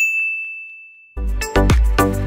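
A single bright 'ding' chime, the subscribe-button notification bell sound effect, struck once and fading away over about a second. Just past the middle, upbeat music with a heavy bass beat comes in.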